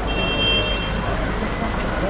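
Busy street ambience: a steady rumble of traffic with a murmur of voices from the crowd around the walkers. A brief high steady tone sounds in the first second.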